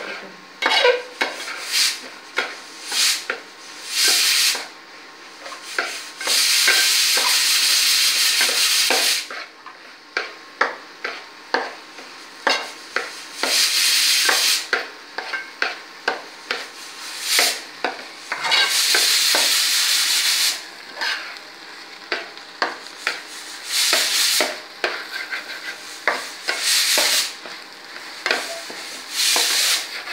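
A metal spatula scraping and stirring rice in an aluminium pot, in many short strokes with a few longer scrapes of the grains against the metal.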